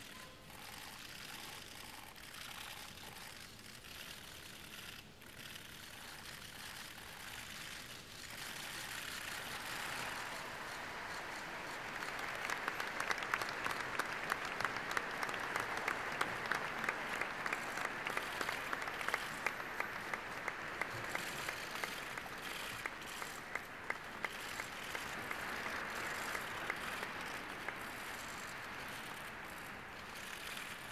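Crowd applauding: the clapping builds up from about eight seconds in and then goes on steadily, with many sharp clicks standing out in it.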